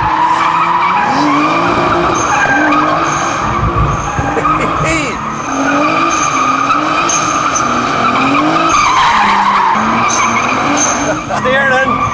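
Rear-wheel-drive car doing doughnuts: the tyres squeal steadily in a slide while the engine revs rise and fall over and over as the throttle is worked to keep the car sliding.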